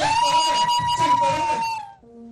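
A single high steady tone held for almost two seconds over busier sound, then cut off.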